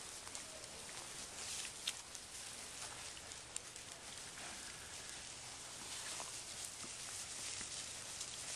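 Wild hog rooting and feeding in dry grass: irregular rustling and crackling of grass stems, with a few short sharp clicks, over a steady background hiss.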